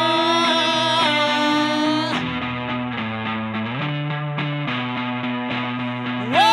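Electric guitar playing: a high note held and wavering for about two seconds, then a run of lower sustained chords.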